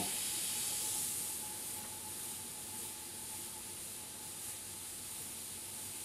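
Gravity-feed airbrush spraying unreduced paint at 25 psi: a steady, high hiss of air through the nozzle, a little louder in the first second or so.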